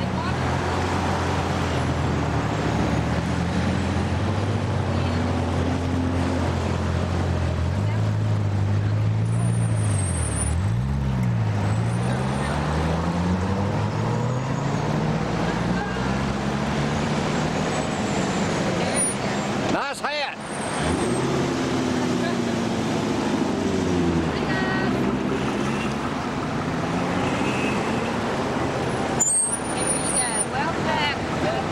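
Corvette V8 engines running at low speed as a line of cars passes one after another, the engine notes rising and falling as each car goes by. There is a brief drop in the sound about twenty seconds in.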